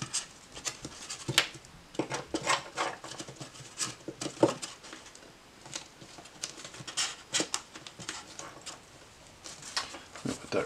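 Irregular clicks, taps and light scraping from handling a rigid mother-mold shell while cutting a silicone mold jacket with an X-Acto knife. The loudest knocks come a little over a second in and about four and a half seconds in.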